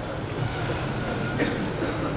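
Audience applauding in a hall, an even wash of clapping with no speech.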